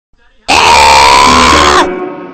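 A loud, drawn-out human scream starting about half a second in and held for over a second on one slightly rising pitch, which bends down as it cuts off.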